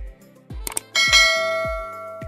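Subscribe-animation sound effect: a quick mouse click, then about a second in a bright notification bell chime that rings and fades over about a second. Underneath is background music with a deep kick drum about twice a second.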